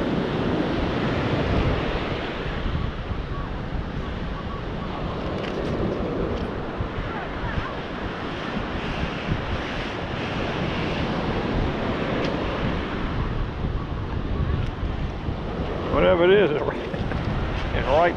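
Surf washing up and draining back over wet sand, with wind buffeting the microphone. A short burst of voice about two seconds before the end.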